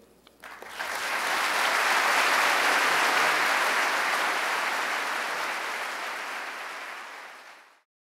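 Audience applauding, building up over the first second and fading out near the end.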